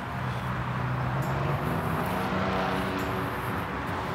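Motorcycle engine running as it approaches along the street, a low steady engine drone.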